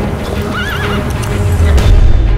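A horse neighing once, a short wavering whinny about half a second in, over a low rumble of hooves that grows louder toward the end. Music plays underneath.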